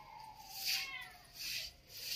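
Grass broom swishing through a wet cow-dung and mud slurry as it is spread over an earthen floor, two soft strokes. A faint, long, slightly falling tone sounds behind them.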